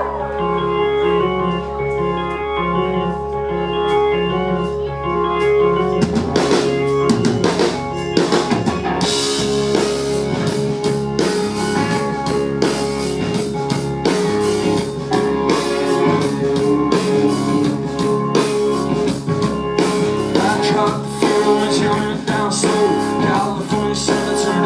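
Live rock band playing a song's instrumental opening. At first there are sustained guitar chords, the drum kit comes in about six seconds in, and from about nine seconds in the whole band plays with steady drums and cymbals.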